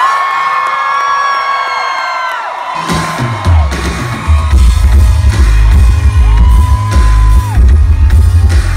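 Live pop concert music through a stage PA, recorded loud from the crowd: a long held note with audience screaming, then a heavy pulsing bass beat cuts in about three seconds in.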